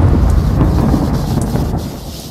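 A deep rumbling boom, like thunder, from a radio-show intro jingle. It is loud at first and fades steadily away.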